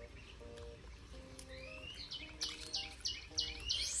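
Small bird chirping repeatedly, about three short high chirps a second, starting with a rising whistle about halfway through and growing louder, over soft background music with a slow stepped melody.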